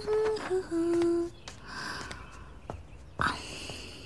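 A woman humming a few held notes of a tune, stepping down to a lower note about a second in, followed by the soft rustle and flick of magazine pages being turned.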